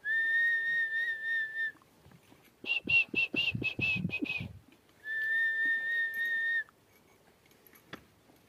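A person whistling two long, steady, high notes, each about a second and a half. Between the notes comes a quick run of short, high chirping sounds, about five a second.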